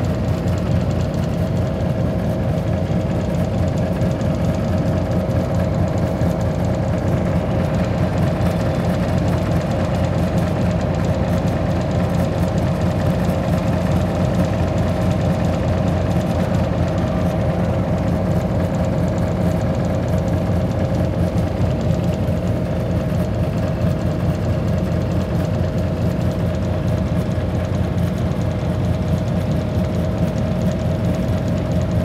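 Steady low rumble of idling engines in a traffic jam of motorcycles, cars and a bus, with a constant hum over it.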